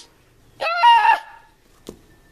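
A child's voice giving a single high, strained cry as a play sound effect. The cry lasts about half a second and starts about half a second in. A short click follows near the end.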